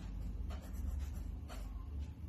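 Pen writing capital letters on lined notebook paper: a few short scratching strokes over a low steady hum.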